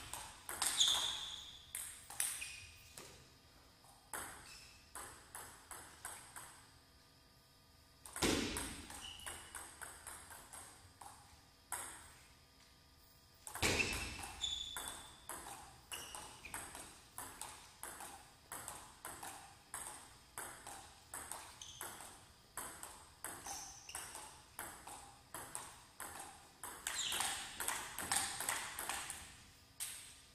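Table tennis ball clicking off the rackets and the table in quick, even rallies. Two heavier thuds land about eight and fourteen seconds in.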